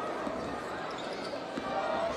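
A basketball being dribbled on a hardwood court, repeated bounces over a steady arena background noise.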